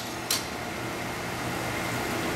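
Royal Master TG-12x4 centerless grinder running with a steady hum, with one short sharp noise about a third of a second in.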